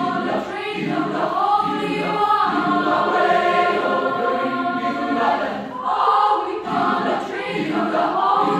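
Large mixed choir of female and male voices singing a spiritual in full harmony, the chords swelling and shifting, with a short break about three-quarters through before the voices come back in together.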